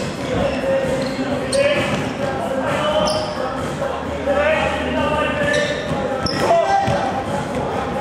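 Indoor football match in a large sports hall: the ball is kicked and bounces on the hard hall floor, the impacts echoing, with players and spectators shouting and calling throughout. A few short high squeaks are also heard.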